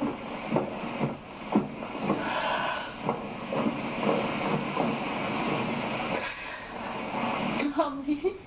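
Footsteps on wooden boards, about two a second, growing fainter as the walker moves away, over steady background noise.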